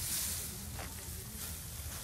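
Dry straw rustling as it is scooped up by hand, loudest in the first half-second, over a steady low rumble.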